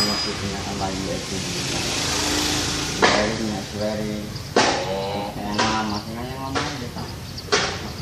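People talking, with the words unclear, from about three seconds in. Before that, a hissing noise swells and fades.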